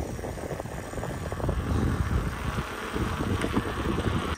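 Wind buffeting the microphone of a moving bicycle ride, a steady rushing rumble that swells and dips irregularly.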